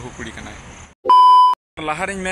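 Edited-in censor bleep: a loud steady 1 kHz beep about half a second long, dropped into the speech with the sound cut to silence just before and after it.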